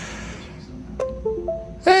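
A computer's system chime of a few short stepped tones, falling and then rising, starting with a click about a second in. It is the Windows sound for a USB device being connected, here the PLC being handed to the virtual machine.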